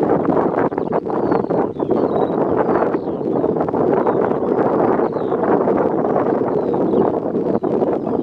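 Wind buffeting the microphone, loud and continuous, with faint, high, short bird notes repeating through it.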